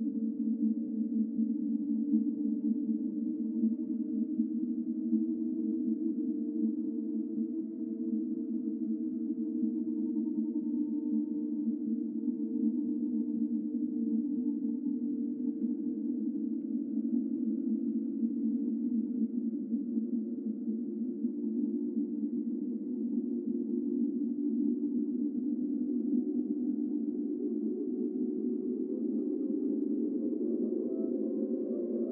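Data sonification of Covid-19 case rates: a dense cluster of steady synthesized tones forming a continuous drone with a fast flutter. Higher tones join in over the last few seconds.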